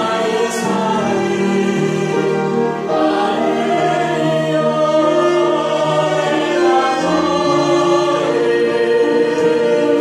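A man, a woman and two girls singing a Korean worship song together, with long held notes.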